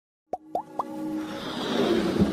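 Logo intro sound effect: three quick plops, each rising in pitch, about a quarter second apart, then a whoosh that builds up over light music.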